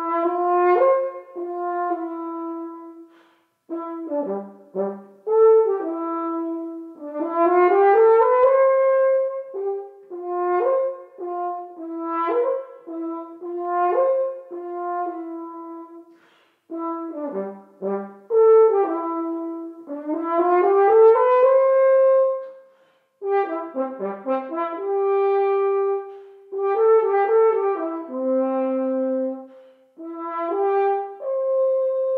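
Solo double French horn playing a slow legato etude: smoothly slurred notes with several rising scale runs. There are short pauses between phrases about four seconds in, around sixteen seconds, and around twenty-three seconds.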